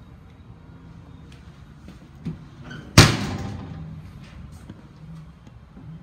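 The steel oven door of a Vulcan commercial gas range slammed shut about halfway through: one loud metallic bang that rings away over about a second, with a smaller knock just before it.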